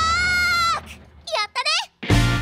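A sung voice holds the final note of a children's song and the backing cuts off, then a high-pitched cartoon voice gives two short, cheery calls, sliding in pitch.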